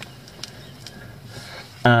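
Low steady background hiss with two faint clicks, one at the start and one about half a second in; a man starts speaking near the end.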